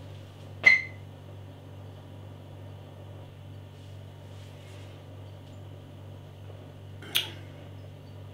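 A person sipping from a beer glass over a steady low hum. About a second in there is a single sharp click with a brief ring, as the glass meets the lips, and near the end a short breathy sound.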